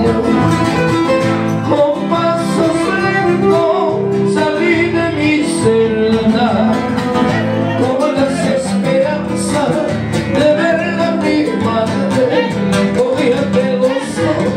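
Two nylon-string acoustic guitars played together, with a man singing into a microphone.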